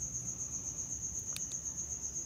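An insect trilling steadily: a high, evenly pulsing note, with a faint click about midway.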